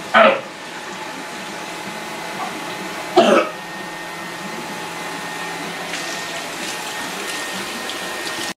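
Water running steadily from a kitchen sink tap, with two short vocal sounds from the person at the sink, one near the start and one about three seconds in.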